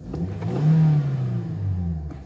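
A car engine heard from inside the cabin, revving up about half a second in and then easing back to a lower pitch.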